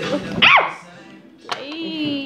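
A single short, high yelp about half a second in, rising and falling in pitch. Music starts up with a click about a second and a half in.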